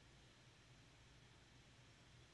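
Near silence: faint room tone with a weak, steady low hum.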